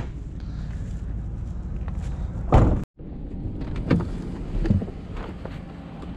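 A vacuum cleaner being loaded into the back of a van: a loud thump about two and a half seconds in, then a few lighter knocks, over a steady low rumble.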